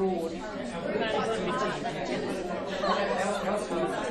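Many people talking at once in groups around tables: a steady hubbub of overlapping conversations in a large room.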